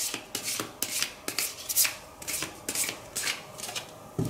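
A deck of cards being shuffled by hand: a quick run of short swishes and flicks, about four a second.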